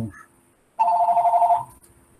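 A telephone ringing once: a short electronic two-tone ring lasting under a second.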